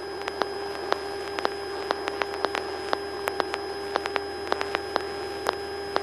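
Light aircraft cockpit sound heard through the headset intercom feed: a steady electrical whine with many irregular faint clicks, over a faint low engine drone.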